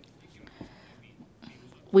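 A pause in a man's speech: low room tone with a faint soft sound about half a second in, then the man starts speaking again right at the end.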